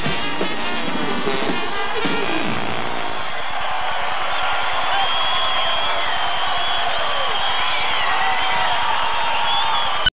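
A New Orleans brass band of trumpets, saxophones, trombone, sousaphone and drums plays the last bars of a song, ending about two and a half seconds in. An audience then cheers and whistles.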